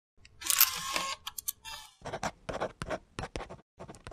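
Logo sound effect: a rising whoosh, then a quick run of sharp camera-shutter clicks starting about halfway through.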